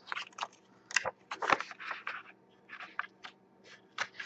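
A folded paper insert being unfolded by hand, crinkling and rustling in many short, irregular crackles.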